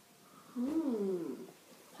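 A person's voice making a single wordless hum, an 'mm' that rises and then falls in pitch for just under a second, starting about half a second in.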